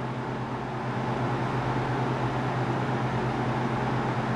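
Steady low hum with an even hiss of background room noise, with no distinct events.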